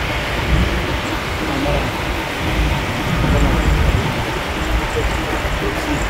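Steady rumble of a moving car in city traffic: engine and tyre noise with the hum of the surrounding street.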